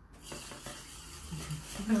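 A spoon stirring crushed ice in a glass, heard as faint scattered clinks; the drink is being stirred to chill the glass.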